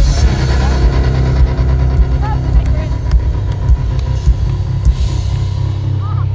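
Live pop band playing an instrumental stretch of a song at arena volume, heavy in the bass, with a steady beat.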